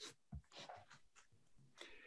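Near silence: room tone, with a few faint brief sounds in the first second and again near the end.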